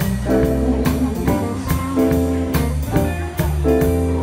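A live band playing guitar over bass and drums, with held chords and a steady beat, amplified through a PA speaker.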